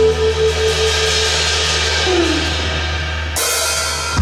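Live rock band playing an instrumental passage between sung lines: drum kit with cymbals and hi-hat over a held bass note and hollow-body electric guitar. A bright cymbal wash swells in about three and a half seconds in.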